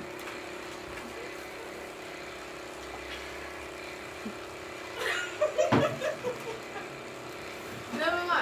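Steady low mechanical hum with a few constant tones in it, and a short, loud burst of voices and laughter about five seconds in.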